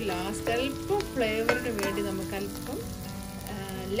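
Shrimp sizzling in a hot frying pan while a spatula stirs them, with scattered short scrapes and taps of the spatula against the pan.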